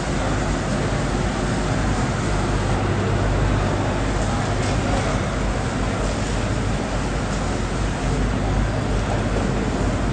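Steady background noise of a fish-market floor: a low hum under a constant rushing haze, with water spraying from a hose onto the wet concrete.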